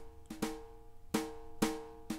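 Soloed snare drum of a software brush kit playing back a MIDI drum pattern through a compressor: a few sharp strikes, about four in two seconds, over a steady ringing tone.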